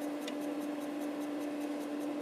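Apple MF355F 3.5-inch floppy drive trying to read a disk: faint ticking from the read head over a steady hum. The drive is failing to read because its head stepper motor is out of alignment, which the owner is tweaking to cure the read errors.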